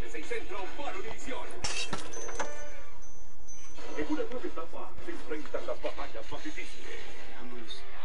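Indistinct voices with music underneath, steady in level, with a short burst of noise just under two seconds in and a thin high tone for about a second and a half after it.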